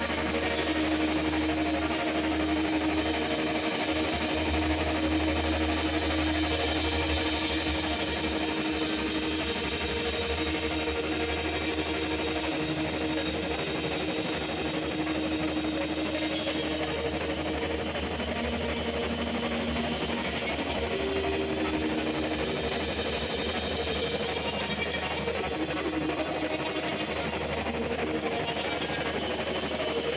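Live psychedelic rock band playing a dense, droning passage of distorted electric guitars and bass, with long held notes that shift every few seconds.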